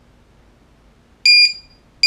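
LiPo battery voltage checker's buzzer giving short, high, steady-pitched beeps, one about a second in and another at the very end, as its low-voltage alarm threshold is being set.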